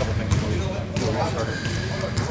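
Basketballs bouncing on a hardwood gym floor, a few irregular thuds about a second apart, over faint background voices echoing in the hall.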